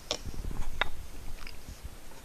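A small knife cutting a piece off a wedge of Morbier cheese on a wooden cutting board: a few faint clicks, one sharper a little under a second in, over low rumbling bumps, followed by chewing.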